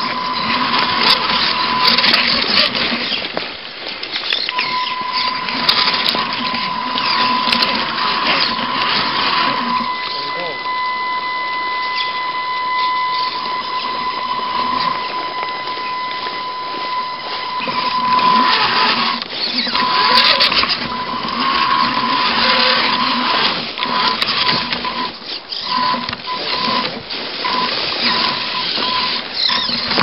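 A radio-controlled rock crawler's electric motor and gearbox whining as the truck crawls, with a steady high whine that holds for long stretches and breaks up in the second half, over rattling and scraping from the chassis and tyres on rock.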